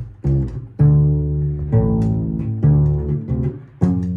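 Mexican guitarrón, the mariachi bass guitar, being plucked: a slow run of about five deep notes, each starting sharply and ringing out before the next.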